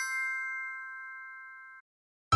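Bell-like transition chime ringing out, several notes held together and fading steadily, cut off suddenly near the end.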